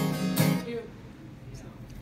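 Acoustic guitar: two final strummed chords about half a second apart, then the chord rings out and fades as the song ends.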